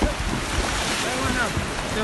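Wind buffeting the microphone over surf on an open beach, a steady rushing noise, with a voice calling out briefly about a second in.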